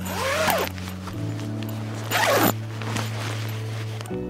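Zipper on a camouflage fabric shelter pulled closed in two quick zips about two seconds apart, over background music.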